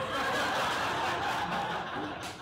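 An audience laughing together at a joke.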